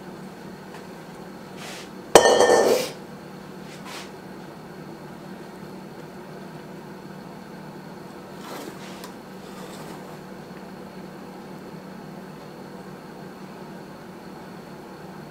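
A short clink and clatter of kitchenware about two seconds in, while cake batter is being scraped into a metal baking pan; otherwise a quiet kitchen with a steady low hum.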